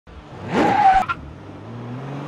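Intro logo sound effect: a short screech like skidding tyres, loud for about half a second and cut off sharply with a click about a second in, followed by a quieter low rising tone.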